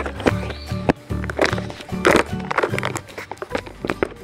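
Music with a changing bass line and sharp percussive hits.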